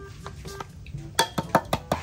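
A plastic squeeze bottle of chili sauce sputtering and clicking as it is squeezed out over raw meat in a steel basin. The sauce comes in a quick run of sharp spurts in the second half.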